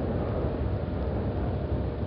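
Steady low rumble and hiss of a competition hall's background noise, heard through an old TV broadcast, with no distinct events.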